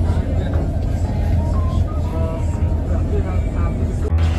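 Steady low rumble of a vehicle's engine and road noise heard from inside the cabin, with faint voices chatting under it.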